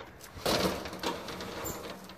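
Corrugated metal roll-up storage unit door rattling as it is unlatched and starts to be raised. The rattle starts suddenly about half a second in and fades gradually.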